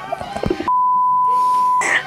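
Censor bleep: a single steady high-pitched beep about a second long, starting about two-thirds of a second in and blanking out the voice underneath.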